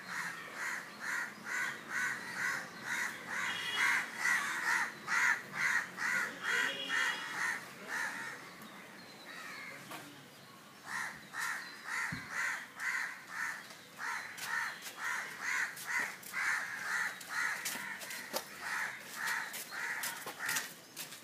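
Crows cawing in a steady, rhythmic run of about two to three caws a second, pausing for a couple of seconds just before the middle and then carrying on.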